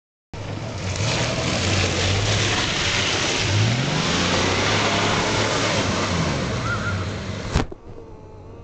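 Ford Bronco II engine running and revving up, under a loud steady hiss. A sharp click comes near the end, and the sound then drops much quieter.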